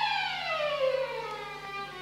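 Solo violin sliding down in one long glissando of about an octave, getting quieter as it falls.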